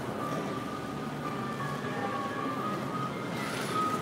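Shop ambience: a steady hubbub with a thin background-music melody stepping in pitch over it.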